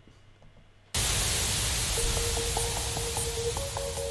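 TV-static hiss from a music-video intro, starting suddenly about a second in after near silence. A faint steady tone and a few short beeps come in under the hiss about halfway through.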